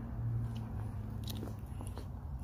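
Honda walk-behind lawn mower's single-cylinder engine running with a steady low hum that weakens partway through, with scattered crackles and clicks over it.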